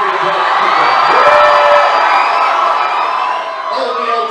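A packed crowd screaming and cheering, a mass of many high voices, loudest about a second in and easing a little near the end.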